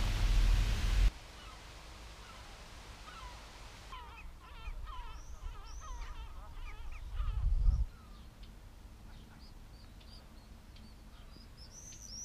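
A noisy rush that cuts off abruptly about a second in, then a group of birds calling outdoors: many short, curved calls in quick succession from about four to eight seconds in, with a few fainter, higher chirps afterwards.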